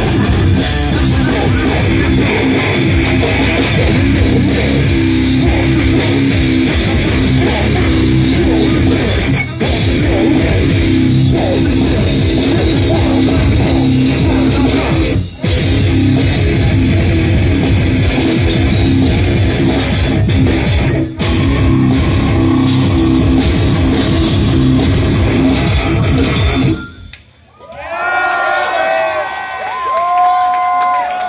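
A slam death metal band playing live and loud: heavily distorted electric guitar, bass and drum kit, with a few split-second stops in the riffing. The song cuts off abruptly near the end, and the crowd yells and cheers.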